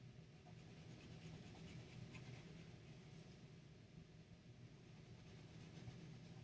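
Faint scratching of a white colored pencil on black paper: quick back-and-forth shading strokes that come in bursts, over a low steady hum.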